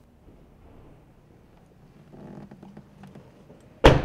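Faint handling noise and small clicks, then near the end the rear passenger door of a 2013 Toyota RAV4 is shut with one loud, sharp thunk.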